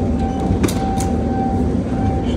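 Airport check-in baggage conveyor belt running with a pink hard-shell suitcase on it: a loud, steady rumble with a thin, high, steady hum over it. A couple of sharp clicks come about half a second and a second in.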